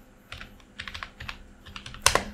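Typing on a computer keyboard: a quick, faint run of about ten keystrokes entering a search term.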